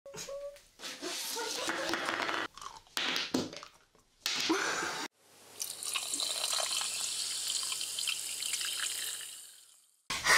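Short cut-together snatches of voices and noisy sounds, then an intro sound effect: a shimmering whoosh with a low hum that swells in about halfway through and fades out near the end.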